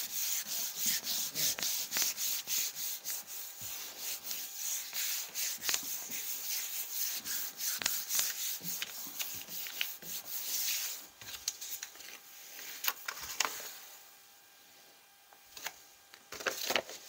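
Hands rubbing the back of a sheet of paper laid on a gel printing plate, burnishing it to take up the print: quick, repeated dry rubbing strokes that stop about eleven seconds in. A few soft paper taps and rustles follow.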